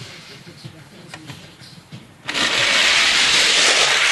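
Die-cast Hot Wheels cars released from the start gate and rolling down a plastic track: a sudden, loud, even rattling rush that sets in a little over two seconds in.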